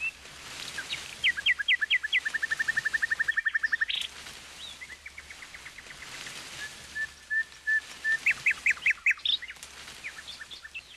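Songbird singing: phrases of quick downward-slurred notes, each followed by a fast even trill, then a few steady whistled notes and another run of slurred notes near the end.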